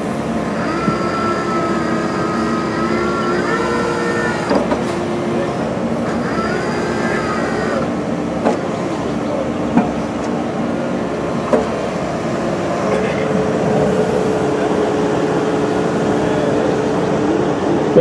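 An 8.5-tonne Kubota excavator's diesel engine running steadily, with hydraulic whine rising and falling as the tiltrotator and grapple are worked. There are a few short knocks.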